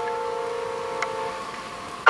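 A grand piano chord left ringing and slowly dying away, with a faint click about halfway through. A loud new chord is struck just at the end.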